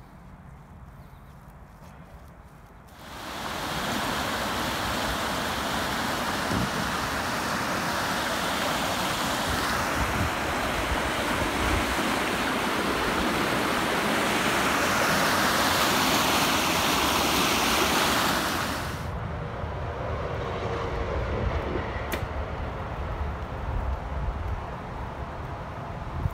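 Steady rush of river water, a loud even noise that starts abruptly about three seconds in and stops abruptly a few seconds before the end. Before and after it there is only a quieter low rumble.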